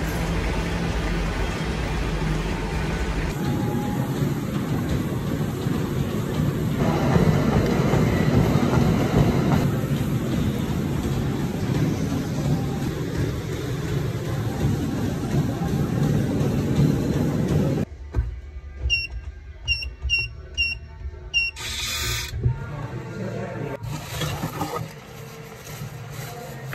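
City street traffic noise with a steady rumble. Later it cuts to a run of about six short, evenly spaced, falling electronic beeps, then a brief loud burst.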